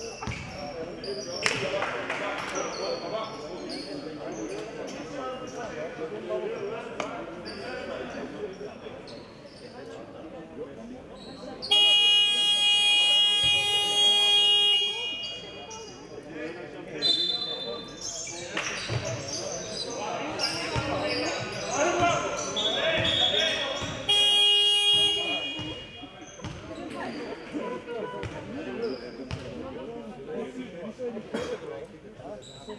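A basketball arena's electric horn sounds twice: a long steady blast of about three seconds, then later a shorter one of about a second and a half. Between the blasts a basketball bounces on the hardwood court and voices echo around the large gym.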